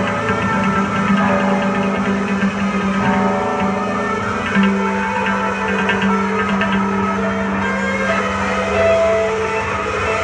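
Loud live noise-rock played on amplified electric guitars, built on a steady droning low note with clashing higher tones shifting above it.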